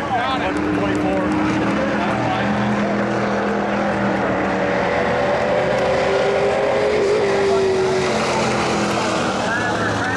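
Several vintage-class dirt-track race cars running at speed on the oval as they take the checkered flag. Their engine notes overlap and hold fairly steady, shifting in pitch as the cars come around.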